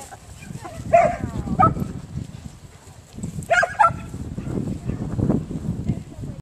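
Briard barking: four short barks in two pairs, one pair about a second in and a quicker pair about three and a half seconds in.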